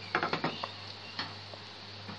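Metal spoon scraping and clicking against a ceramic plate as a spoonful of strawberry jam syrup is spread thin: a quick run of clicks in the first half-second or so, then one more click a moment later, over a steady low hum.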